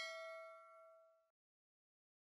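A single bell-like chime that rings on and fades out over about a second and a half. It is the notification-bell ding of an animated subscribe-button overlay.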